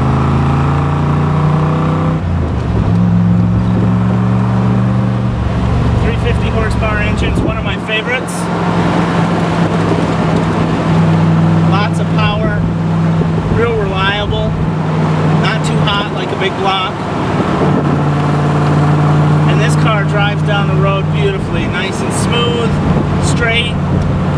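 1966 Corvette L79's 327 cubic-inch, 350 hp V8 running through side exhaust pipes while the car is driven, heard from inside the car. The engine note climbs and drops back twice in the first few seconds as the car pulls away through the gears, then settles into a steady cruise.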